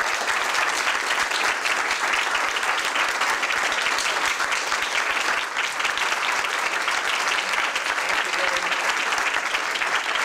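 A small crowd of people applauding steadily, many hands clapping together without a break.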